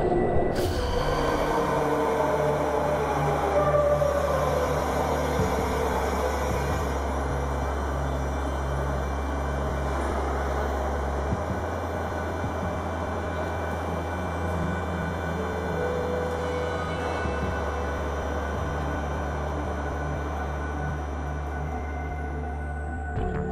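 Subway train running, heard as a steady low rumble with a whine falling in pitch over the first few seconds, under an eerie droning music score.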